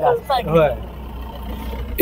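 A man speaks briefly, then a low steady rumble fills the pause.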